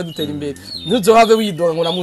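A man's voice in drawn-out, sing-song tones, with long held pitches and few breaks.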